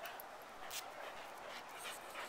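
Faint sounds of an Australian Cattle Dog and a Norwegian Elkhound playing, with brief rustles about three-quarters of a second in and again near the end.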